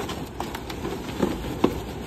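Latex balloons being handled and crammed into a car's cargo area: rubbery squeaks and rustling with a few short sharp knocks, the loudest a little past halfway.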